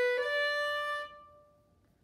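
Violin playing B then D on the A string, slurred in one bow: the B moves into the D without a break just after the start, and the D is held about a second before ringing away.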